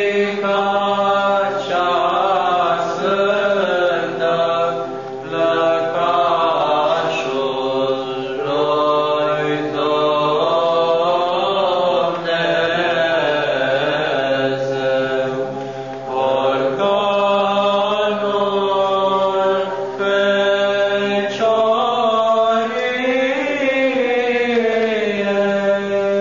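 Orthodox church chant: voices singing a slow, ornamented melody over a steady held drone note.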